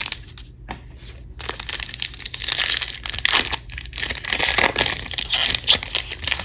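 Foil wrapper of a Topps Big League baseball card pack being crinkled and torn open by hand, an uneven crackle that picks up about a second and a half in.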